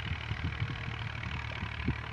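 An engine idling steadily, a low even hum, with a few soft low knocks over it.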